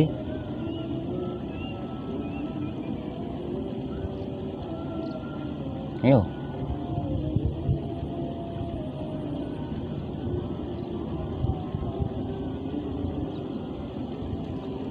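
Steady hum of a distant engine with faint wavering tones. A man calls out once, about six seconds in.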